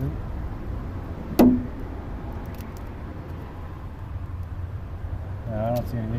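A single sharp metallic clink about a second and a half in, from hand tools or parts being handled at the spark plug well during spark plug removal. It rings briefly over a steady low hum.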